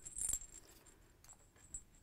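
Brief rustle and light clinks of cotton quilting fabric pieces being picked up and moved on a cutting mat in the first half-second, then only faint handling ticks.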